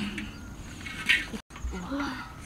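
A child's short wordless vocal exclamations, with a brief break in the sound a little past the middle.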